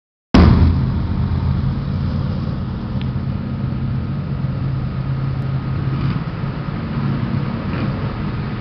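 Several dirt-track race cars' engines running together at a steady, low pace, a deep drone that holds about the same pitch throughout.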